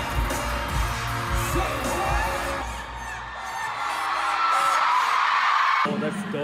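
K-pop song with singing over a heavy beat. About halfway through the beat drops out and a swelling sound builds, then cuts off suddenly near the end.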